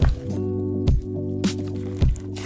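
Background music with held chords, over the wet squishing of a thick mass of slime being kneaded and squeezed in a plastic tub.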